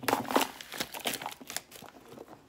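Clear plastic shrink-wrap crinkling as it is pulled off a cardboard box, loudest in the first half second, then scattered crackles.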